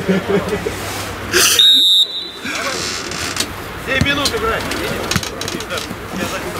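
Players' voices on a football pitch, with a short, shrill whistle blast about one and a half seconds in.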